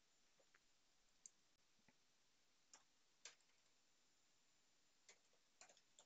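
Near silence broken by a handful of faint, scattered keyboard clicks as a search term is typed.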